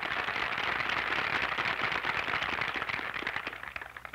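Audience applauding: a dense, even patter of many hands clapping that thins out near the end.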